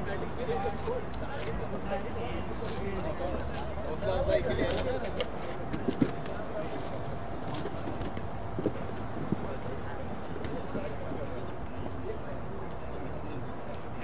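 Open-air ambience at a tape-ball cricket game: distant voices of players over a low steady rumble, with a few short sharp knocks, the clearest about six seconds in and again around nine seconds, near the moment a delivery is bowled.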